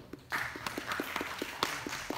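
Applause from a small audience begins about a third of a second in, with one clapper's sharp, regular claps, about seven a second, standing out above the rest.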